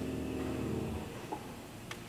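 A low grand-piano chord rings and is cut off about a second in. A quiet pause follows, with a faint click or two.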